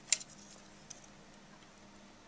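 A sharp click from a plastic terminal strip and spade terminals being handled on a plastic enclosure lid, followed by a fainter tick about a second later, over a faint steady low hum.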